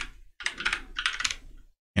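Typing on a computer keyboard: a quick run of keystrokes lasting about a second, entering a sudo password at a terminal prompt.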